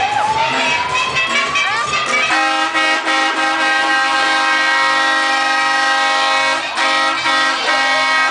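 A vehicle air horn sounds one long, steady blast beginning a couple of seconds in. It cuts out briefly near the end and then sounds again, over banda music and crowd noise. A slow rising whistle-like tone precedes it.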